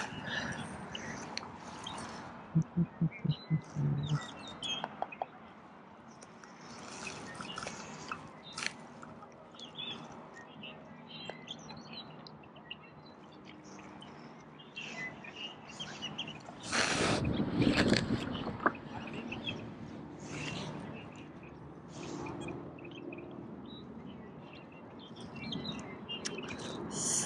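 Small birds chirping here and there at the lakeside. About three seconds in there is a short run of low, evenly spaced pulses, and around seventeen seconds in a louder burst of noise lasting about a second.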